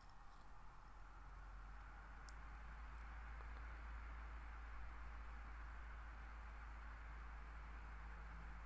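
Quiet room tone: a steady low hum under a faint hiss, with two faint clicks a little over two seconds in.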